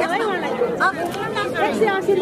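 Several people talking over one another: overlapping chatter of voices.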